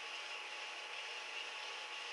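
Faint, steady room tone and microphone hiss.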